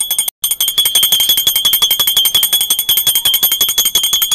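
Small brass temple bell rung rapidly and continuously, a high ring with quick even strokes, broken once briefly just after the start.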